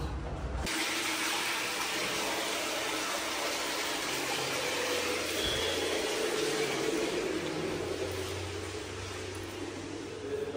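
A steady rushing, hiss-like noise that starts abruptly just under a second in and holds at an even level, easing off slightly near the end.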